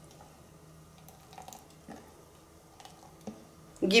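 Quiet handling of a plastic blender cup: a spatula scraping the oat purée down inside it, with a few soft knocks.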